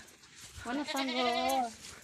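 A goat bleating once, a single wavering call about a second long.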